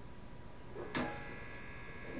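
An electric guitar string picked once about a second in, the note ringing on faintly.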